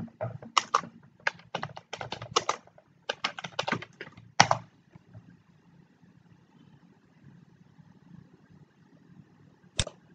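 Typing on a computer keyboard: a quick run of key clicks lasting about four and a half seconds, then quiet, with a single sharper click near the end.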